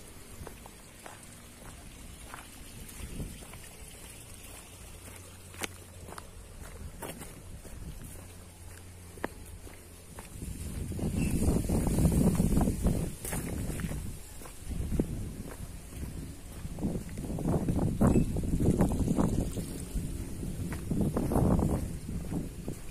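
Footsteps on a dirt footpath. From about halfway through, irregular low rumbling gusts of wind on the microphone come and go and become the loudest sound.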